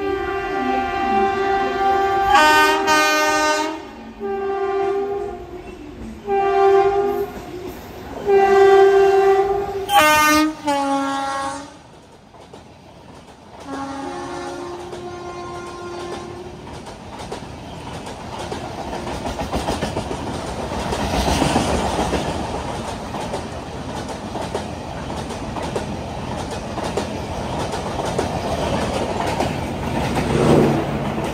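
Indian Railways express train, the Deccan Queen, sounding its locomotive horn in a string of about eight blasts, some in two tones, as it runs through the station without stopping. From about sixteen seconds in comes the steady rumble and clickety-clack of its coaches passing close by at speed.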